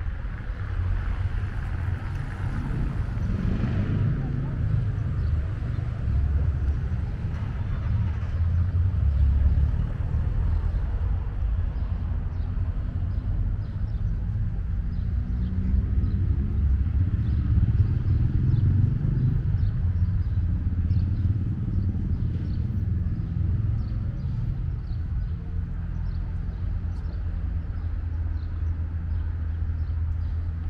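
Town street ambience: a steady low rumble of traffic, with a passing car's engine rising in pitch about halfway through.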